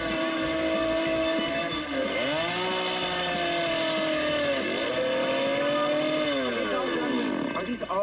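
Chainsaw running at high revs as it carves into a block of wood. Its pitch sags and climbs back three times as the chain bites into the cut.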